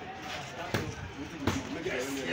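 Boxing gloves landing during a close sparring exchange: two sharp thuds, the first about three-quarters of a second in and the second about half way through, over background voices.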